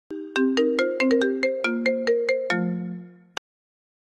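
Smartphone ringtone for an incoming call that goes unanswered: a quick melody of separate notes, about five a second, ending on a longer low note that fades out. A single sharp click follows just after, then it stops.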